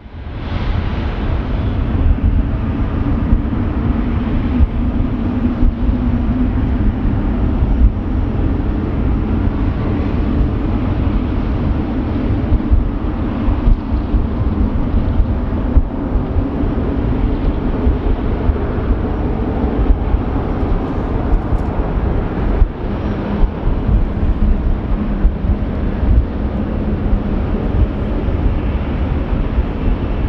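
Jet engines of a Boeing 777-300ER (GE90s) running on the runway: a loud, steady rumble with a low hum that starts and stops abruptly.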